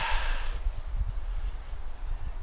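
Wind buffeting the microphone outdoors, a low irregular rumble, with a short breath fading out at the start.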